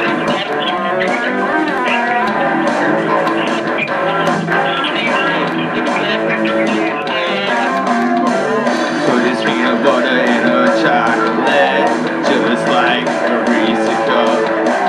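Live rock band playing loud, with an electric guitar strummed hard over a steady beat.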